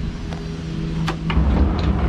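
Locking pins being pulled and a boat's slide-out cooler seat sliding out from under the console: a few sharp clicks and knocks, then a rumbling scrape in the second half, over a steady low hum.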